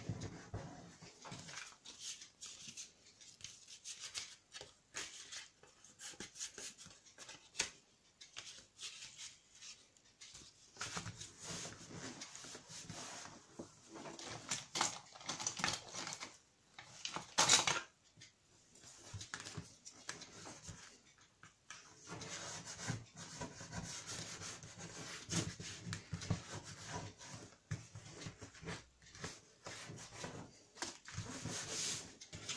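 Paper and kraft card handled, slid and rubbed on a desk: scattered rustles, light taps and rubbing, with one louder burst of rustling a little past halfway.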